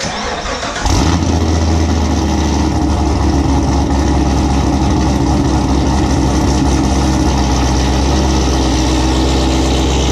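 A C7 Corvette's V8 is cranked and catches about a second in. It then settles into a steady idle through its quad exhaust.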